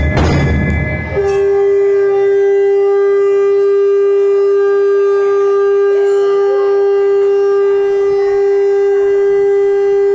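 Conch shell (shankh) blown in one long, unbroken, steady note of the evening aarti, beginning about a second in after a brief burst of loud clattering noise.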